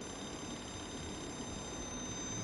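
Faint, steady high-pitched electronic whine of several thin tones over a low room hum.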